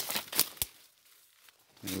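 Dry leaves and twigs crackling and rustling in a few sharp snaps during the first half-second or so as someone pushes through forest undergrowth, followed by a quiet lull.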